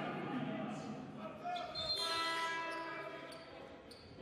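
Basketball arena sounds during a break in play: a ball bouncing on the hardwood court, and about two seconds in a steady pitched tone that lasts over a second.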